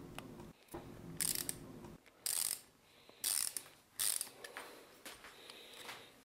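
Ratchet wrench clicking in about four short bursts as bolts are undone on a throttle body.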